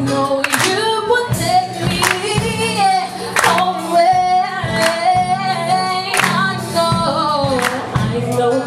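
A woman sings a slow gospel song live into a microphone, backed by acoustic guitar. A sharp beat lands about every second and a half.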